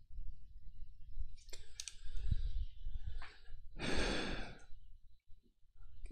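A man's long breath out, a sigh, about four seconds in, with a few soft clicks earlier and a low rumble underneath.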